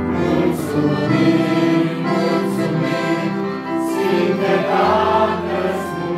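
A group of voices singing a hymn together, accompanied by accordion and electronic keyboard, in steady sustained chords.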